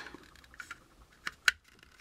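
Unpainted plastic model-kit parts clicking together as the interior tub's blocks are pressed onto the chassis pins: a few light ticks, then one sharp click about one and a half seconds in as it snaps into place.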